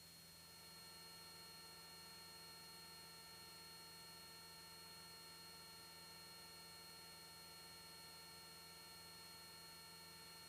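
Near silence: a faint, steady electrical hum made of several thin unchanging tones.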